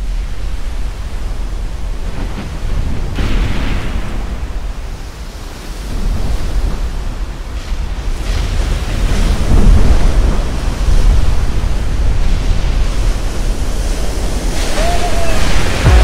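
Heavy ocean waves breaking and churning whitewater, with wind on the microphone; the noise builds about six seconds in and is loudest from about ten seconds on.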